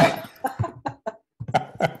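A man chuckling in several short bursts of laughter, heard over a video-call connection.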